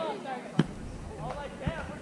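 A volleyball struck twice by players' hands or forearms, sharp smacks about a second apart, the first louder, with players' voices around them.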